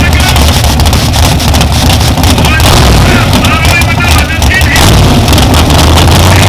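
Drag car's big engine idling loudly and choppily through a short side-exit exhaust pipe, close by.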